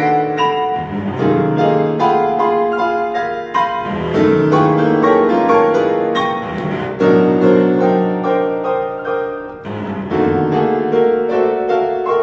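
Cello and piano duo playing contemporary classical chamber music: quick, dense piano notes over held bowed cello notes, in phrases separated by brief breaks.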